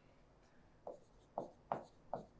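Faint pen strokes writing on an interactive whiteboard's screen: three short strokes, starting about a second in.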